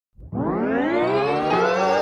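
Rising sweep sound effect leading into intro music: a tone with many overtones starts a moment in, glides up in pitch over the first second, then holds steady.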